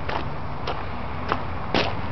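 Footsteps of someone walking: four soft scuffs at a walking pace, about one every half second, the last the loudest, over a steady low hum.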